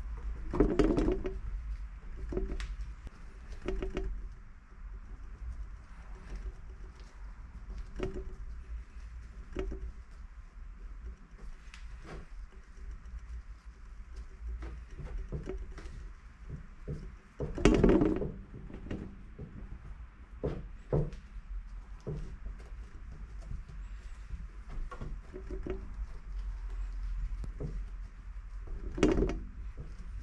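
Dry carbon fibre twill cloth being handled and pressed into a mold on a wooden workbench: irregular rustling, brushing and light knocks, with louder bumps about a second in, around the middle and near the end. A steady low hum runs underneath.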